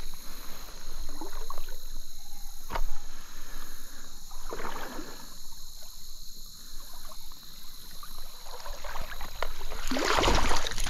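Stream water splashing and sloshing in irregular bursts as a hooked brown trout is played toward the net, with one sharp knock about three seconds in.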